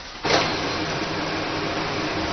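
Office photocopier starting up about a quarter second in and running steadily as it makes a copy.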